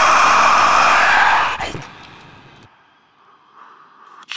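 A long, harsh metal scream from an unaccompanied vocal track, held for about the first two seconds, then fading away.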